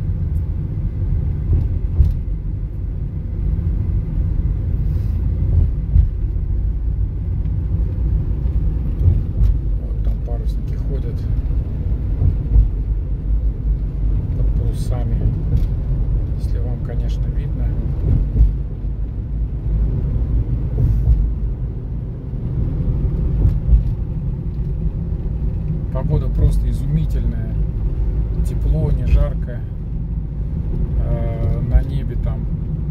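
Steady low road and engine rumble heard inside a car's cabin while it drives in slow traffic, with a few faint clicks scattered through it.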